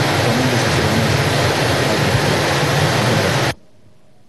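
Loud, steady hiss of electronic noise in the broadcast sound feed, cut off abruptly about three and a half seconds in.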